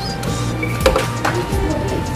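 A coin dropping into a claw machine's coin slot with one sharp metallic click a little under a second in, over the machine's electronic music. A steady held tone comes in just after the click.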